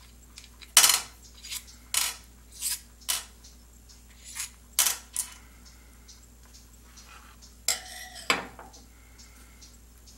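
Small metal parts (a mandrel rod and steel and brass bushings) clicking and clinking as they are handled and set down on a sheet-metal bench top. A string of sharp clicks, the loudest about a second in, and near the end a clink that rings briefly.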